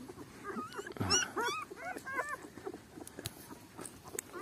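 Newborn puppies whimpering in a run of short, high squeaks in the first half, then falling quiet.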